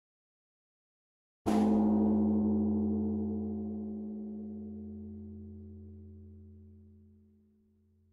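A large bell struck once about a second and a half in, giving a deep ringing tone that fades slowly and is still faintly sounding at the end.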